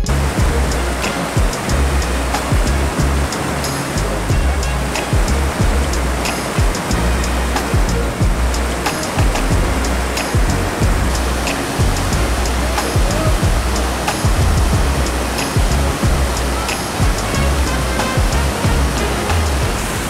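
A fast-flowing creek in flood, a steady loud rush of water over rocks, with gusty low rumble from wind on the microphone. Faint music with a light ticking beat runs underneath.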